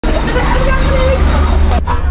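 Street ambience: a steady low traffic rumble with indistinct voices over it.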